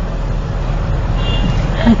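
City bus engine and road noise heard from inside the passenger cabin: a steady low rumble. A brief high beep sounds about a second in.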